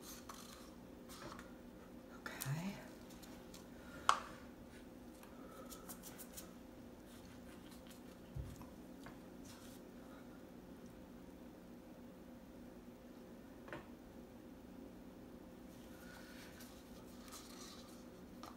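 Quiet handling of plastic paint cups and a wooden stir stick while acrylic paint is layered into a cup: faint scrapes and taps, a sharp click about four seconds in and a low thump around eight seconds in, over a steady low hum.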